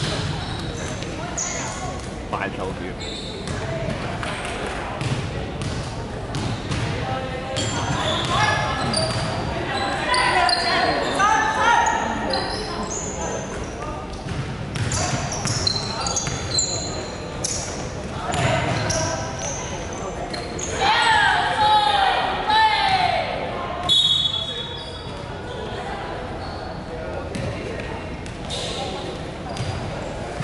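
A basketball game on a hardwood court: the ball bounces as it is dribbled and passed, amid short knocks and players' shouts. It all echoes around a large hall, and the shouting swells twice, about a third of the way in and again past the middle.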